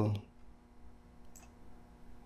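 A single faint computer mouse click about one and a half seconds in, over a low steady hum.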